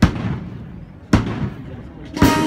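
Two loud strikes of a military band's bass drum and cymbals, about a second apart, each ringing briefly; the band's lead-in beats just before it starts playing.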